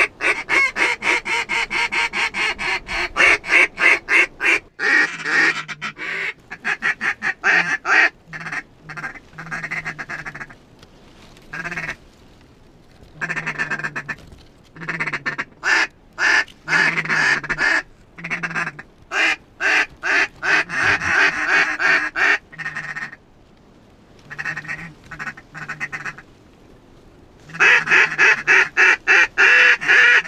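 Goose honking and duck quacking in rapid runs of calls, coming in bursts with short breaks.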